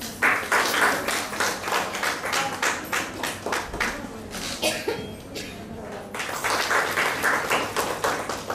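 A small group clapping by hand, starting at once, easing off about five seconds in and picking up again near the end.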